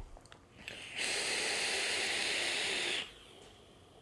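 A long draw on a Kanger Dripbox's dripping atomizer (RDA) as the coil fires: a steady hiss of air through the atomizer for about two seconds, which stops abruptly.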